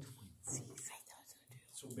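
Soft, indistinct murmured speech in a small meeting room, then a man's voice beginning to speak near the end.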